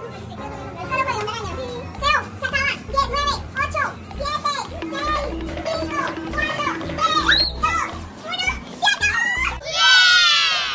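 A young child's high voice, talking and exclaiming excitedly in short bursts, over background music with a bass line and a held note.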